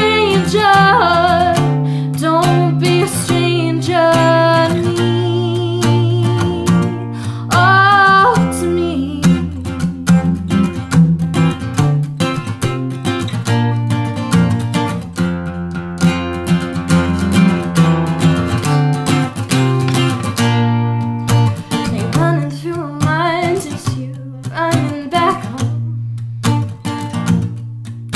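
A woman singing over an acoustic guitar. The voice drops out for a guitar-only passage in the middle and comes back near the end.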